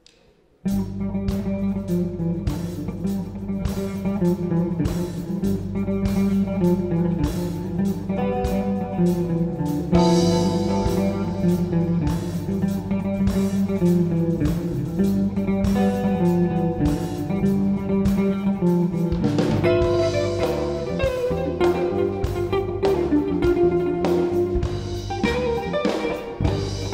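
Live jazz band starting a tune suddenly about half a second in: a semi-hollow electric guitar playing the lead over bass guitar and drum kit.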